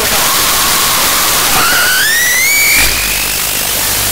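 Harsh noise music: a dense, loud wall of hiss and static. Midway a wavering electronic tone rises in pitch, then cuts off abruptly just before the three-second mark.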